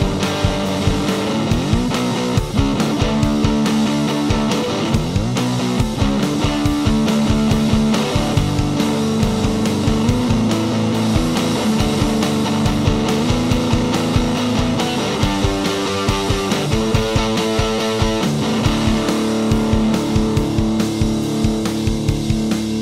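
1985 Rickenbacker 360 electric guitar played through an amplifier: a rock part with drums behind it, with sliding notes about two and five seconds in.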